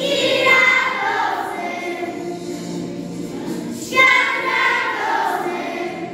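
A children's choir singing, with strong new phrases starting at the beginning and again about four seconds in, each falling in pitch.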